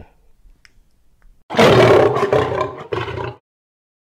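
A loud roar sound effect, animal-like, starting about a second and a half in and lasting about two seconds before cutting off suddenly.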